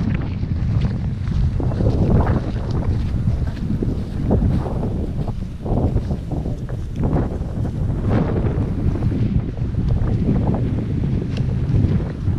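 Wind buffeting the camera's microphone: a loud, gusty rumble that swells and eases.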